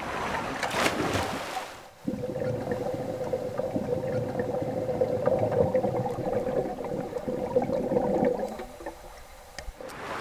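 Swimmers diving into a pool with a splash about a second in. Then a muffled underwater rush of water and bubbles with a steady hum, as heard below the surface, which fades near the end.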